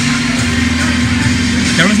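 Steady background din of a busy indoor venue with a low hum running through it; a man starts talking near the end.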